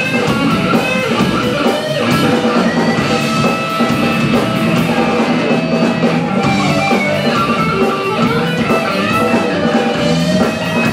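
Live rock band playing an instrumental passage: electric guitars over a drum kit keeping a steady beat on the cymbals.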